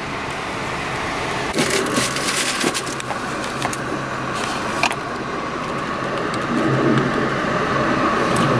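Steady noise of a car cabin with the car running, with clusters of clicking and rustling handling noises about a second and a half in and again around five seconds.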